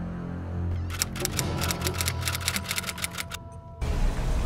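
Dramatic background music with a steady low drone and held tones. About a second in, a rapid run of sharp clicks, like a typewriter, comes in and goes on for about two and a half seconds. It all cuts off suddenly near the end.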